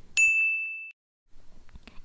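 A single bright 'ding' chime sound effect: one high ringing tone that strikes near the start and fades out within about a second.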